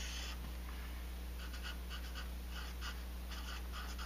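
Felt-tip Sharpie marker writing on paper: a run of short, faint scratchy strokes as a word is printed, over a steady low hum.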